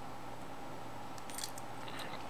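Faint clicks of a toy dog tag's metal bead chain being handled, a short cluster about a second and a half in and one near the end, over steady room hiss.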